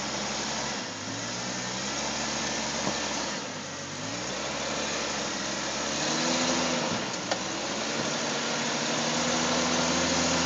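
Jeep Cherokee XJ's engine running at low revs while crawling over rocks, its pitch rising and falling with the throttle. A single sharp knock comes near seven seconds in.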